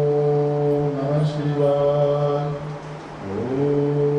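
A voice chanting a Hindu mantra in long, steady held notes; about three seconds in the note drops away and a new one slides up into place.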